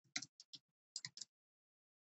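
Computer keyboard keys being typed: about six short, light clicks in two quick runs, the second run about a second in.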